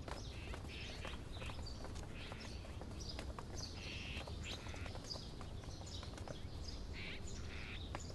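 Small birds chirping in short, scattered high calls over a steady low background rumble.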